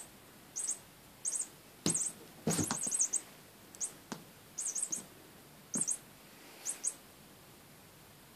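Short, high electronic chirps, mostly in twos and threes and repeating every half second to second, from a chirping cat wand toy's pom-pom as it is swung; they stop about seven seconds in. A few thumps come in between, the loudest about two to three seconds in.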